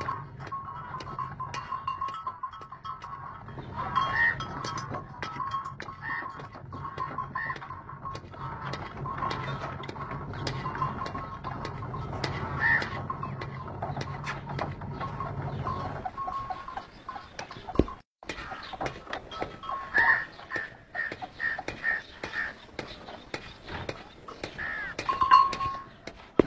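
Bullock-driven stone flour mill running: a steady drone with rapid clicking and knocking from the drive and the grinding stones. A low rumble under it stops about 16 seconds in.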